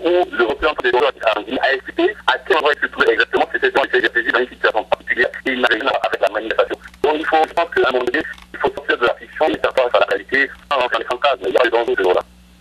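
A person speaking continuously over a telephone line, the voice thin and band-limited, with a steady low hum and frequent clicks of line crackle.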